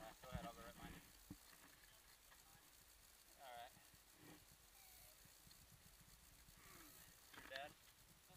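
Near silence, with faint, distant voices calling out a few times: once at the start, once midway and once near the end.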